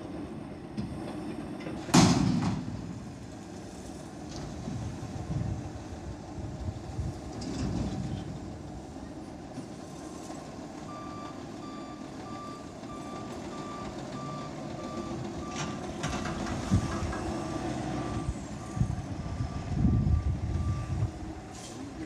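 Autocar front-loader garbage truck with a Heil Durapack Python body, its diesel engine running, with a loud bang about two seconds in and a few smaller knocks. In the second half its reversing alarm beeps steadily, about once a second, as the truck backs up.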